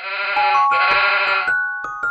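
A sheep bleats twice, each bleat under a second long, as a plinking mallet-percussion tune begins about half a second in.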